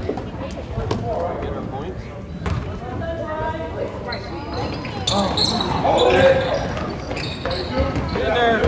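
Basketball bouncing on a hardwood gym floor around a free throw, a few separate bounces, with people's voices calling out in the gym.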